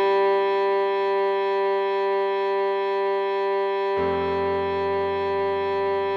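Cello melody holding one long G, played at half speed over a low accompaniment that shifts to a deeper bass note about four seconds in.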